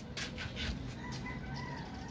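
A rooster crowing faintly, one drawn-out call in the second half, over a few light clicks and rustles near the start.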